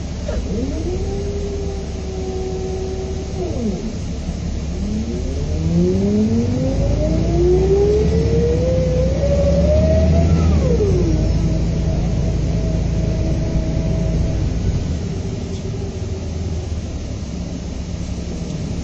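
Volvo B7R coach's six-cylinder diesel and drivetrain heard from inside, pulling away and accelerating. The note rises in a whine and drops back at gear changes about three and a half and ten and a half seconds in, over a steady low rumble.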